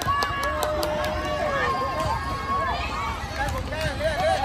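Many children's voices shouting and calling out at once over crowd chatter, with a couple of long drawn-out shouts in the first two seconds.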